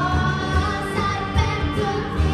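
A young girl singing a rock song into a microphone over amplified accompaniment with bass and drums, her voice sliding between held notes.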